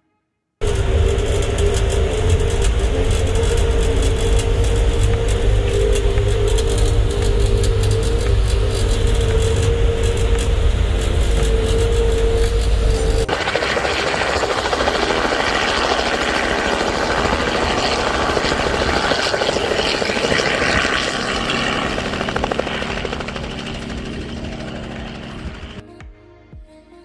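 A loud, steady low rumble with a steady hum, which cuts off suddenly about 13 seconds in. It is replaced by the brighter, noisy sound of a small helicopter running close by, which fades as it moves away near the end.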